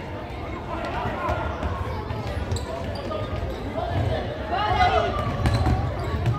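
Thuds of a futsal ball being kicked and bouncing on a wooden sports-hall floor, with children's feet running. Voices call out across the large hall, loudest near the end.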